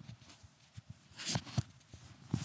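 Handling noise from a clip-on wireless microphone transmitter being fastened to a shirt with its magnet, picked up by its own built-in microphone: soft fabric rustling and a few light clicks, the loudest about a second and a half in. Beneath them runs a faint hiss, the audible noise floor of the first DJI Mic's built-in mic.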